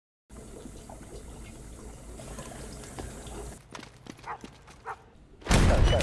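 A low, steady rumble of room tone, then a few faint clicks and taps, then a sudden loud crash about five and a half seconds in, with shouting starting just after it.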